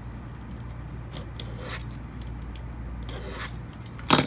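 Utility knife blade scoring thin wood veneer across the grain along a steel rule: a few short, light scratchy cutting passes, not cut all the way through at each stroke.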